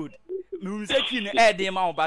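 Men's speech on a radio phone-in, much of it with the narrow sound of a telephone line.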